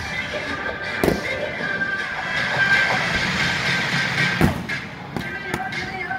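A massed marching band playing sustained chords, with fireworks going off in time with the music: a loud bang about a second in, another at about four and a half seconds, and a few fainter pops after it.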